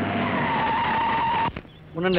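Car tyres screeching as a car brakes hard to a stop: a loud screech with a steady high squeal that lasts about a second and a half and then cuts off abruptly.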